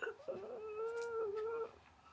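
A single held whimper, steady in pitch with a slight waver, lasting about a second and a half.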